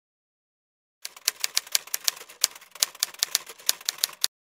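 Typewriter typing sound effect: a fast, uneven run of key strikes that starts about a second in after silence.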